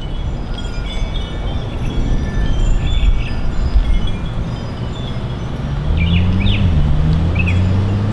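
Outdoor suburban street ambience: a steady low rumble, likely wind on the microphone, with scattered short bird chirps. From about six seconds in, a low engine hum of a vehicle comes in and rises slightly in pitch.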